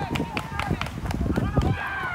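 Several people shouting over each other outdoors, urging baserunners on.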